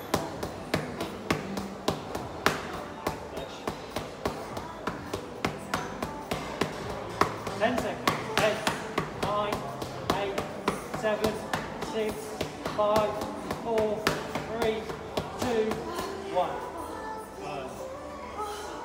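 Boxing gloves punching focus mitts: a steady run of sharp smacks, about two a second and quicker in the middle, tailing off near the end.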